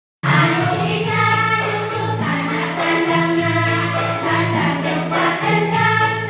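A group of voices singing a song together over a steady musical accompaniment, the notes held about a second each; it starts abruptly right at the opening.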